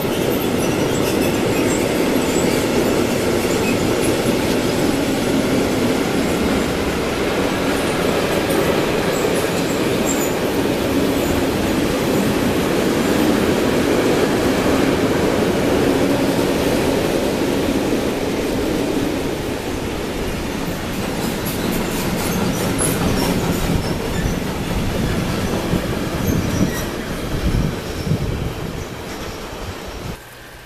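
Freight train of covered sliding-wall wagons and open high-sided wagons rolling past close by: a steady rumble of steel wheels on the rails with brief high squeaks here and there. The rumble eases a little past the middle, and sharper clacks and knocks come near the end before the sound cuts off.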